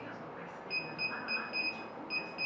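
Multilaser Style car multimedia head unit giving short, high touchscreen key beeps: five quick beeps about a quarter second apart, starting under a second in. Each beep confirms one tap on the brightness arrow, one step up of the setting.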